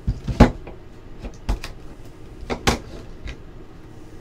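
Cardboard hobby box being handled and turned in the hands, giving a string of about eight sharp knocks and taps, the loudest near the start.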